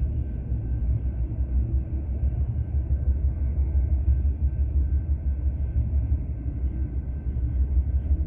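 Double-stack intermodal freight train rolling past a level crossing, heard from inside a stopped car: a steady low rumble.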